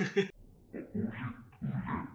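A man laughing in three short bursts after fumbling his lines.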